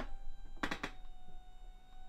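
Power recliner's electric motor running as the chair reclines, a steady high whine with a short burst of noise less than a second in.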